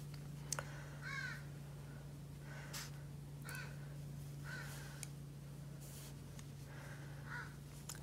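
Faint bird calls, several short harsh calls spread a second or so apart, over a steady low hum.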